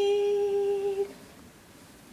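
A woman's unaccompanied voice holding one long, steady note, which stops about a second in.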